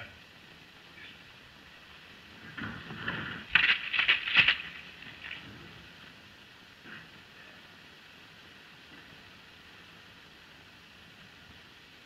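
A wooden sash window being pushed open: a short scraping rattle about three to four seconds in, over the steady hiss of an old film soundtrack.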